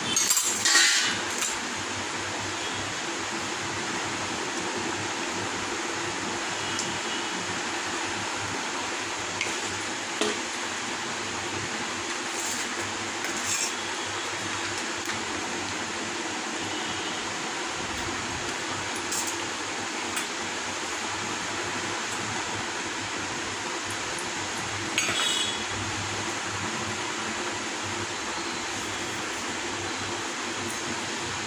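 Light clinks of kitchenware against a stainless steel plate as marinade ingredients are added, a few scattered ones with the loudest cluster just after the start and another near 25 seconds, over a steady background hiss.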